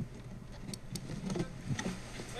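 Faint handling noise with a few light clicks, two sharp ticks a little under a second in, and a man saying 'no, no' near the end.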